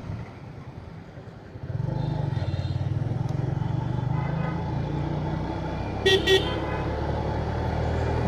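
TVS Metro Plus 110 cc single-cylinder motorcycle engine running on the road. Its note comes up louder and steadier about two seconds in as the bike pulls along. A short horn toot sounds about six seconds in.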